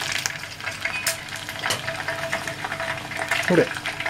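Cicadas deep-frying in a saucepan of hot oil: a steady sizzle broken by a few sharp crackles and pops. The frying is fairly subdued, which the cook takes for the oil's temperature dropping.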